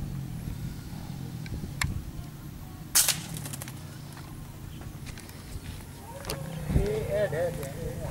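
A single sharp gunshot about three seconds in. Voices are heard near the end.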